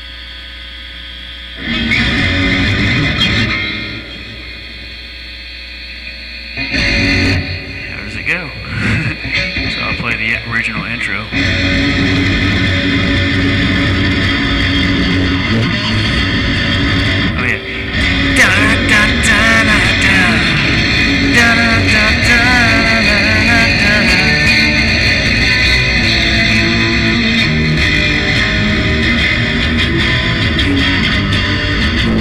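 Guitar playing a song's verse: a single chord struck about two seconds in and left to ring, then broken phrases, then steady playing from about eleven seconds on, with a voice singing the melody along with it.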